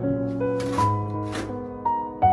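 Background piano music, with two short scraping swishes about halfway through: a snow shovel pushed across snow on a porch floor.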